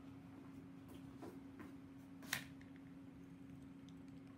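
Near silence: quiet room tone with a steady low hum, a few faint ticks, and one sharper click a little over two seconds in.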